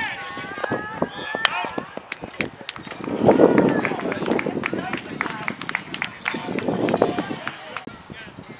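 Baseball players and spectators shouting and calling out during a play, with scattered short clicks and knocks. The voices swell about three seconds in and again near the end.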